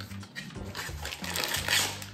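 Cardboard biscuit box being torn open and a paper-wrapped packet pulled out of it, a dry tearing and rustling that is loudest near the end, over soft background music.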